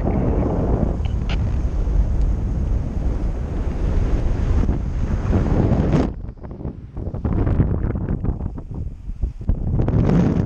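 Wind rushing over an action camera's microphone from the airflow of paraglider flight: a steady, loud rush that drops abruptly about six seconds in and turns gusty and uneven.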